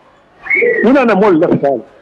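A man speaking after a short pause, starting about half a second in, with a brief high, slightly falling tone at the start of his words.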